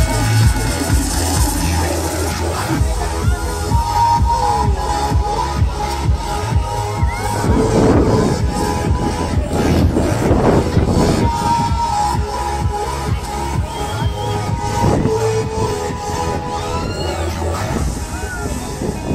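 Loud electronic dance music with a steady beat, played over a Disco Dance fairground ride's sound system while the ride spins.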